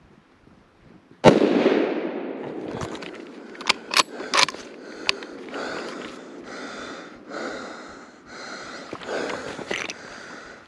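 A single deer rifle shot about a second in, ringing out and echoing through the woods. A few seconds later comes a quick run of sharper, quieter metallic clacks.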